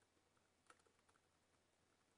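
Very faint computer keyboard typing: a few soft key clicks, one a little louder just after half a second in, against near silence.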